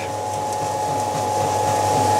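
Vertical spiral (screw) feed mixer running, a steady electric machine hum with a constant whine held at one pitch.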